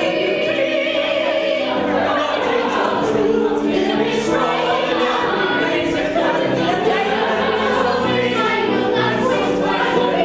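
Several voices singing together in a stage-musical number, with musical accompaniment, continuous throughout.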